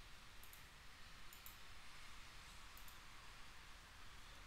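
Near silence with room hiss and three faint double clicks, spread a second or so apart, from someone working a computer.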